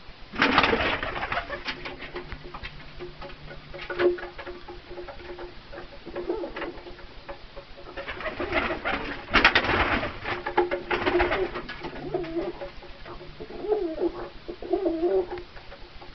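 Domestic pigeons cooing in low, wavering calls. Loud rustling comes just after the start and again about eight to ten seconds in.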